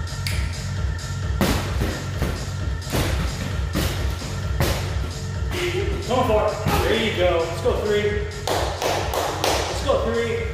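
Gloved punches landing on a free-standing punching bag, an uneven series of thuds that quickens into a flurry near the end, over electronic dance music with a steady beat.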